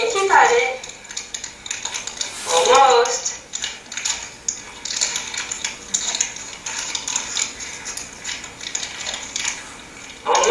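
Crinkling and crackling of a plastic fruit-strip wrapper as a toddler works at opening it: a long string of small, irregular clicks, heard through room speakers as a video plays. A voice breaks in briefly at the start and again about three seconds in.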